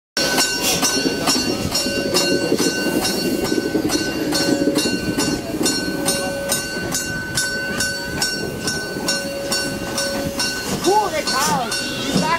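Class 52 steam locomotive rolling slowly past at close range, its exhaust chuffing in an even rhythm of about two to three beats a second, with a steady high tone running through it.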